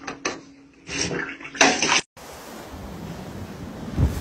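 Clattering, splashing bursts in a small tiled shower with a faint steady hum under them. Then, after a sudden cut about halfway through, a steady rush of wind and surf.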